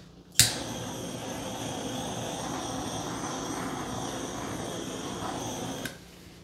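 Handheld hair dryer switched on with a click, then blowing with a steady whoosh for about five seconds before it cuts off just before the end.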